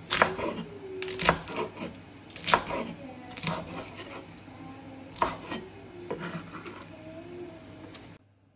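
Chef's knife slicing cabbage on a bamboo cutting board: sharp, irregular knocks of the blade striking the board, roughly one a second.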